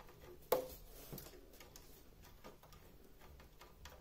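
Faint clicking of plastic building-brick parts as a small knob on a toy launch tower is turned by hand, with one sharper click about half a second in.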